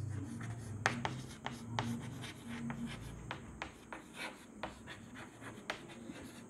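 Chalk writing on a chalkboard: an irregular run of sharp taps and short scratches as letters are formed.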